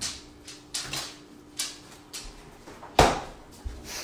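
Freezer being opened and shut to put a stuffed Kong toy inside: a series of knocks and clicks of the door and handling, ending in one firm thump of the door closing about three seconds in.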